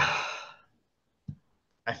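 A man's breathy sigh, an exhale fading out over about half a second, followed by a short mouth click; he starts speaking again near the end.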